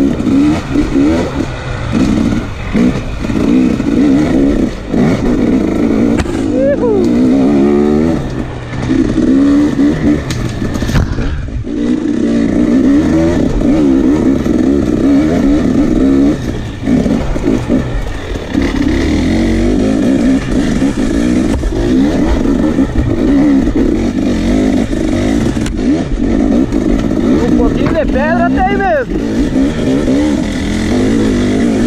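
Enduro dirt bike engine, heard from the rider's own bike, revving up and down continuously as the throttle is worked on a rough trail. There is a brief let-off of the throttle about twelve seconds in and a sharp high rev near the end.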